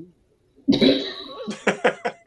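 A man coughs, a harsh burst of sound that follows a brief silence and ends in a few short, sharp bursts, mixed with a spoken word.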